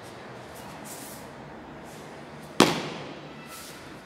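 A single sharp, loud smack from a martial artist's movement in Bajiquan practice about two and a half seconds in, with a short reverberating tail; otherwise faint background noise.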